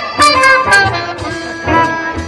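Live band playing an upbeat number, with a run of sharp, loud accents in the first second.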